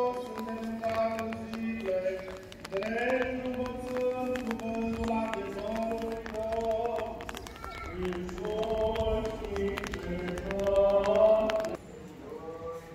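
Slow chant sung by male voices, long held notes stepping from one pitch to the next, with many short clicks over it. The level drops sharply just before the end.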